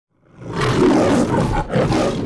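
The MGM logo's trademark lion roar: a long, loud roar starts a moment in, breaks briefly near the end, and a second roar follows.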